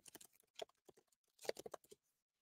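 Faint typing on a computer keyboard: short runs of key clicks, a few at the start, one or two about half a second in, and a quicker run near the end.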